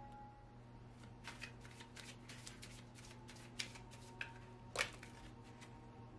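Tarot cards being handled and laid down on the table by hand: a string of light, irregular card flicks and taps, the sharpest about five seconds in.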